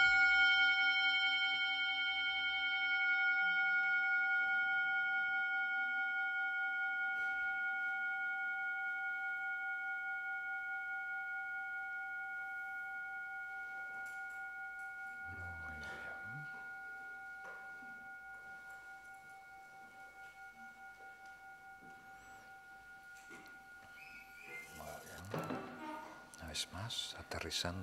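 A struck meditation bell ringing out after a single strike: several steady overtones with a slow wavering pulse, fading gradually over about twenty seconds. It marks the close of a meditation session.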